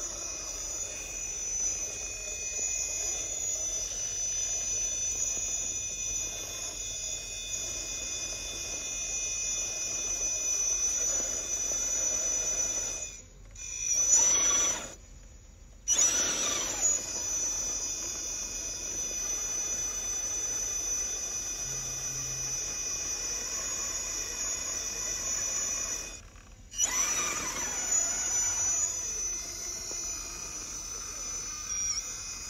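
Electric motor and gear drivetrain of a radio-controlled rock crawler whining steadily at crawling speed as it climbs rock. The sound drops out briefly twice, a little before halfway and near the end, and after each break the whine rises and falls in pitch as the throttle changes.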